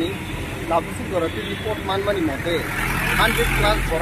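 A man speaking, in words the recogniser did not catch. From about three seconds in, a low engine rumble, like a passing road vehicle, rises underneath the voice.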